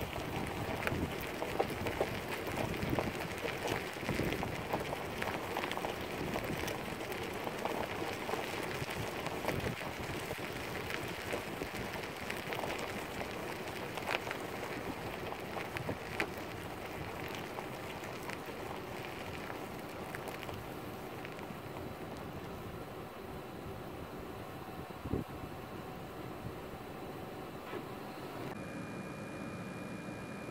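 Outdoor ambient noise: a steady hiss dotted with many small crackles and ticks. Near the end it cuts to a vehicle's steady running hum with a faint high whine.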